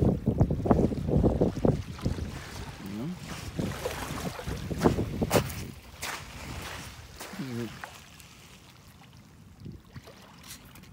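Small waves lapping at the shoreline, with wind rumbling on the microphone, loudest in the first two seconds and dying away toward the end. A few sharp clicks come around the middle.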